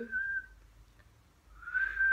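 A person whistling one steady, high, held note that stops about half a second in. After a pause, another held whistled note at the same pitch starts near the end.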